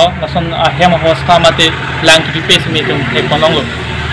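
A man speaking continuously, over a steady low hum.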